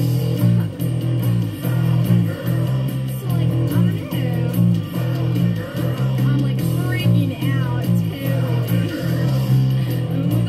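Fender Precision bass with roundwound strings, picked through a Marshall bass amp, playing a driving line of repeated low notes along with the original band recording of drums and guitar.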